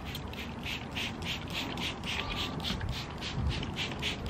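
Plastic trigger spray bottle squirted over and over in quick succession, about four short hissing sprays a second, misting liquid onto a bundled shirt.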